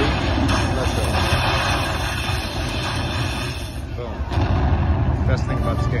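Lightning Buffalo Link slot machine sound effects: a loud rushing noise with a deep rumble for about four seconds as lightning strikes the screen, then bright chimes as the win meter counts up near the end.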